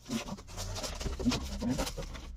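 A cardboard shipping carton is opened and its contents are lifted out: cardboard and plastic air-cushion packaging scrape and rustle, with a few short squeaks.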